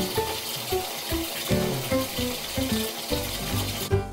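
Water from a hand-shower hose running into a bathtub, a steady hiss that cuts off abruptly near the end, under background music with plucked melodic notes.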